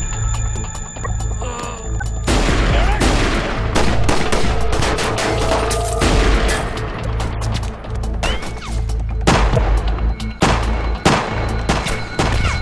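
Music with a heavy, steady bass. About two seconds in, a long barrage of gunfire begins from a gunfight: many shots in quick succession, going on to the end.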